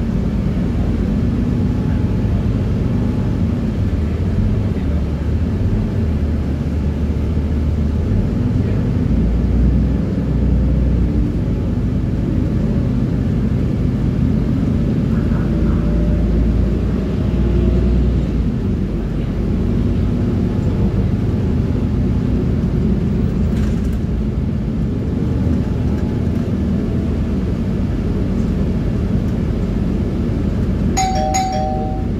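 Interior of a Transjakarta city bus driving along a road: a steady low rumble of engine and road noise, with a faint whine that rises and falls in pitch.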